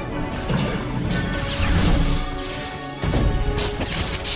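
Action film soundtrack: an orchestral score under crashing impacts and sweeping whooshes, swelling to its loudest a little before two seconds in, with a sudden heavy hit about three seconds in.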